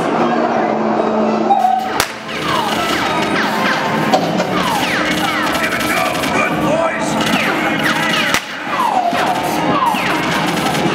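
Staged gangster-shootout sound effects: a sharp gunshot about two seconds in and another near the end, with a run of short falling whistles typical of bullet ricochets between them.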